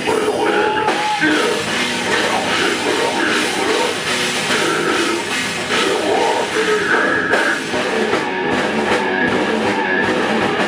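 Slamming brutal death metal band playing live: drum kit and heavily distorted guitars, loud and dense.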